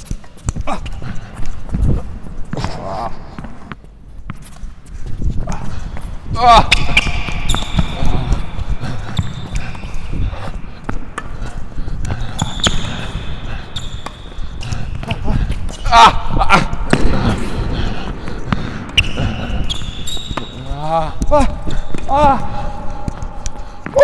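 A tennis rally played with Wilson Clash V2 racquets: repeated racquet strikes and ball bounces on an indoor hard court, with footfalls and shoe squeaks, all echoing in a large hall. A short exclamation and a laugh come about six seconds in.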